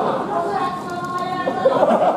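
Several voices overlapping at once in a large hall, with one higher voice held for about half a second near the middle.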